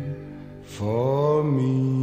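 Pop song from a compilation CD: after a brief quieter dip, a sung note swells in about a second in and settles onto a sustained chord.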